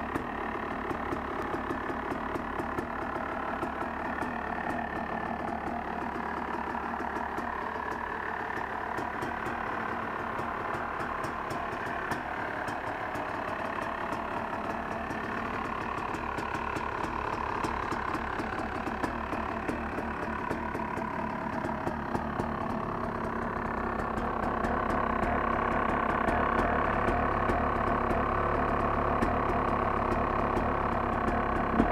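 2009 Yamaha YZ250 single-cylinder two-stroke engine running at a steady idle on its first start after modification work, growing louder near the end.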